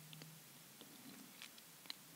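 Near silence: room tone, with a few faint short clicks, the clearest just before the end.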